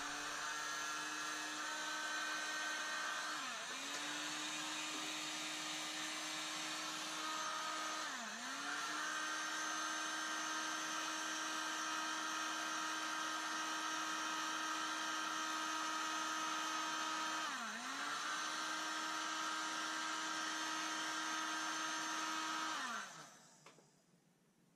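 Heat gun running steadily, its fan motor giving a steady hum with air hiss as it blows hot air onto a taped metal fishing spoon. The pitch sags briefly three times, and near the end the motor is switched off and winds down.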